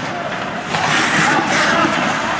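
Hockey skates scraping across the ice, with players' voices calling out over the rink.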